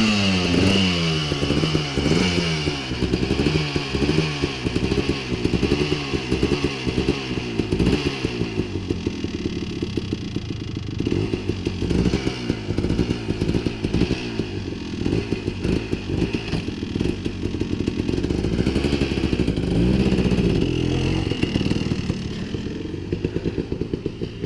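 Honda TRX250R quad's two-stroke engine being revved up and down over and over, its pitch rising and falling about once a second, then running more evenly with another rise near the end.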